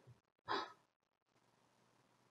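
A woman's single short, soft breath about half a second in, then near silence.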